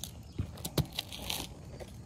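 A few light clicks and rustles of small hard objects being handled: cut plastic zip ties and a pair of wire cutters being picked up.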